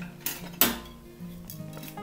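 A metal wire whisk clinking against other kitchen utensils as it is pulled from a utensil crock: two sharp clinks within the first second, the second louder.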